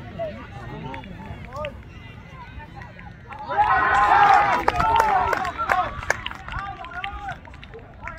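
Spectators shouting encouragement as a player runs in, then breaking into loud cheering and yelling together about three and a half seconds in, celebrating a score; the cheering eases off after a couple of seconds into scattered shouts.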